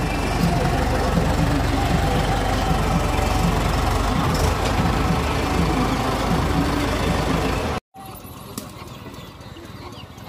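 Mahindra Yuvo 575 DI tractor's diesel engine running steadily, a low, even engine sound that stops abruptly about eight seconds in, leaving quieter outdoor background.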